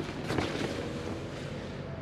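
Steady wind noise on the microphone.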